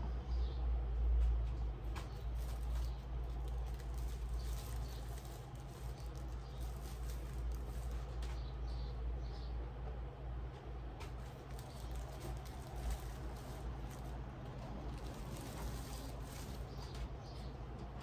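Light rustling and a few scattered small clicks of items being handled, over a steady low hum.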